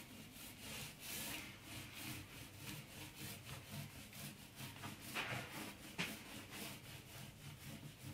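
A hand tool rubbed back and forth on the end of a painted wooden yard, in regular strokes about two a second, with a sharper knock about six seconds in.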